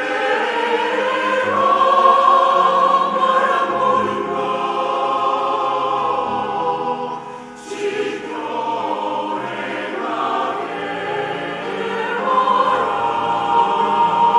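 Mixed church choir singing a Korean sacred anthem in parts, with piano accompaniment. The voices hold long sung lines with a short break a little past halfway, then come back in for the next phrase.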